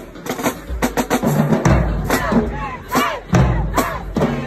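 Marching band drumline playing in the bleachers: sharp snare strokes over deep bass drum hits. Voices in the crowd shout and cheer over the drums, loudest in the second half.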